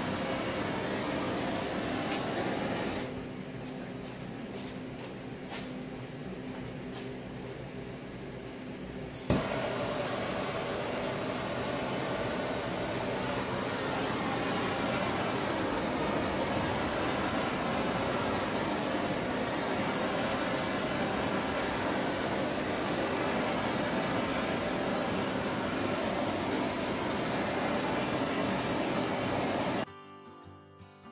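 Handheld gas blowtorch burning with a steady hiss as it is passed over fresh countertop epoxy. The hiss drops lower about three seconds in, a sharp click comes about nine seconds in, and the full hiss then returns.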